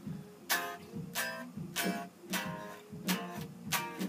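Electric guitar, a Telecaster-style solid body, strummed in chords, about six strums evenly spaced roughly two-thirds of a second apart, each ringing briefly. The change played is the corrected F minor to C minor to D-flat to A-flat.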